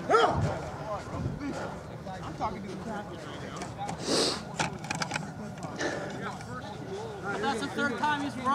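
Indistinct voices of players and spectators around the field, loudest just after the start. A short burst of hiss comes about four seconds in, followed by a few sharp clicks.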